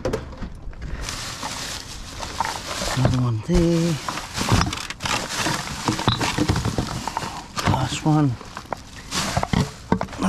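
Rummaging through a plastic crate of rubbish: plastic bags rustle while plastic bottles and cans clack and knock against each other. Twice, about three and a half and eight seconds in, a short wavering vocal sound like a hum is heard.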